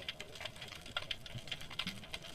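Underwater ambience picked up by a submerged camera: a constant crackle of irregular sharp clicks, with a couple of brief low tones.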